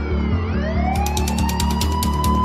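Siren wailing over music with a steady beat: its pitch dips, then rises slowly and holds high. Rapid ticking percussion joins about a second in.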